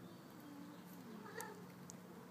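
Domestic cat meowing softly: a faint, low, drawn-out note that falls in pitch, then a short higher meow about a second and a half in, with a couple of faint clicks.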